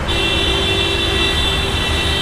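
Heavy city traffic with engines running and a car horn held in a long steady blast, briefly breaking off near the end.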